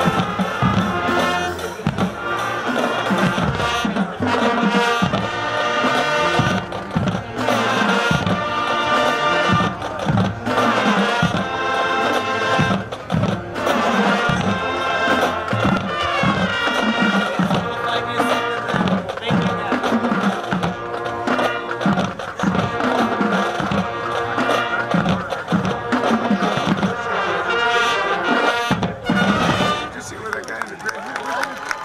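High school marching band playing an upbeat number: trumpets and saxophones carrying the tune over a steady marching drum beat.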